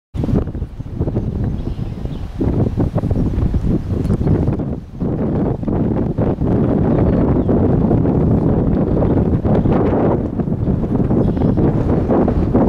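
Wind buffeting the microphone: a loud low rumble that gusts and dips in the first half, then holds steadier and louder.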